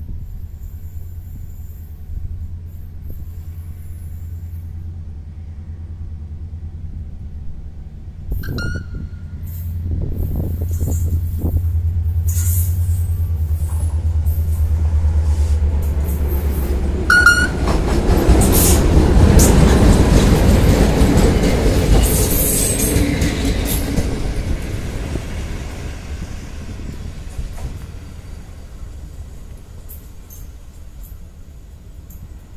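A locomotive-hauled passenger train passing close along the station track. A steady low engine hum gives way to the rumble of the locomotive and coaches, loudest a little under halfway through, then fading as the train draws away. Two short high squeaks come about eight and seventeen seconds in.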